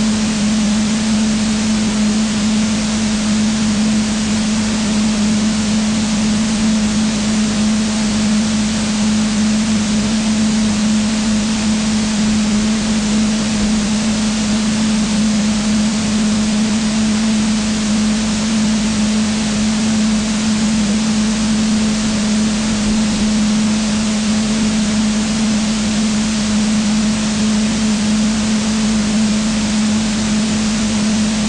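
A steady, loud hiss with a constant low hum under it, unchanging throughout.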